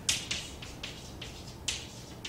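Chalk writing on a blackboard: a quick, irregular run of sharp taps and short scratchy strokes as letters are written, with the loudest tap about three-quarters of the way through.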